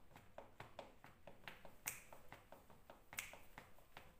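Near silence with a faint, even ticking beat, about four ticks a second: the karaoke backing track leaking quietly out of closed headphones into the condenser microphone. Two brief, louder hissy sounds come about two and three seconds in.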